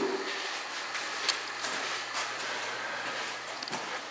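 Quiet room noise with a few faint, irregular footsteps or knocks.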